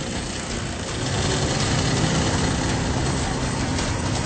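Street traffic: car engines running as cars drive past, a steady low hum that gets a little louder about a second in.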